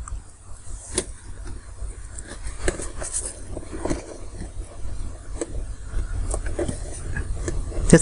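Wristwatches being handled: scattered light clicks and taps at irregular intervals over a steady low hum.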